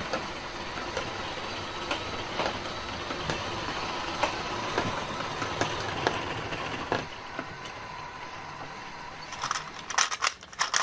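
Motorized LEGO fairground model running: small electric motors and plastic gears whirring steadily with a faint high hum, with sharp plastic clicks every second or so. Louder rattling comes in near the end.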